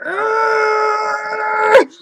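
A woman's voice holding one long, high-pitched cry at a steady pitch, a mock cry of pain as she acts out taking a noogie. It breaks off with a brief sharp pop near the end.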